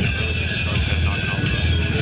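A vehicle engine running with a steady low drone, under a faint, distant voice.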